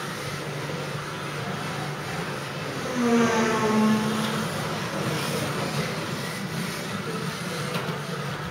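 Kyosho Mini-Z radio-controlled cars running on a carpet track, a steady electric motor and gear noise. About three seconds in, a louder pitched whine lasts about a second and a half as a car passes close.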